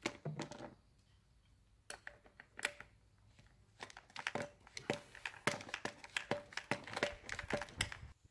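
Small clicks and scrapes of hands working a manual backpack sprayer's brass pump piston and rubber packing cup with pliers, fitting the packing turned over to make the pump build pressure. The clicks are sparse at first and come thick and fast in the second half.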